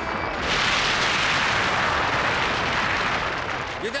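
Cartoon sound effect of a multi-storey building collapsing: a loud crash and rumble that starts about half a second in and runs for about three seconds, easing slightly near the end.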